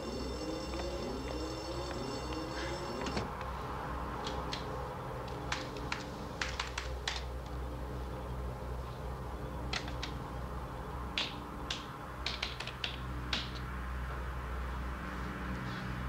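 Irregular clicks of keys being struck on a computer keyboard, scattered from about four seconds in, over a steady low hum. For the first three seconds a warbling electronic tone sounds and then stops abruptly.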